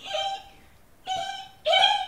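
A woman imitating a dolphin with her voice: three short, high, squeaky calls, the last one the loudest.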